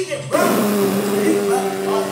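A man's loud, drawn-out yell, held on one steady pitch for about two seconds, rough and harsh-sounding, starting just after a brief pause.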